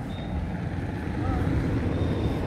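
Steady low rumble of outdoor background noise, with a faint distant voice about a second in.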